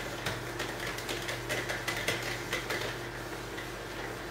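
Handheld whiteboard eraser wiping across a whiteboard: irregular short rubbing strokes and light knocks, thinning out in the last second, over a faint steady hum.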